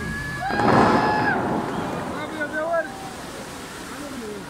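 Rush of water from the Dubai Fountain's tall jets crashing back down as spray, swelling loud about half a second in and fading away over the next two seconds.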